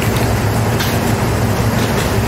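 Steady machine hum with a rushing noise, like a fan or air-conditioning unit running continuously.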